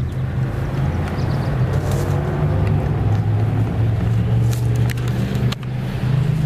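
A motor running steadily with a low hum, and a few light clicks over it.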